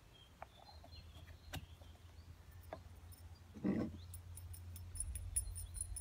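Faint handling sounds as baking soda is spooned into a latex glove and the glove is worked onto a glass jar: a few light clicks, one short muffled sound just before the 4-second mark, and rapid high-pitched ticking near the end. Under it runs a low wind rumble on the microphone.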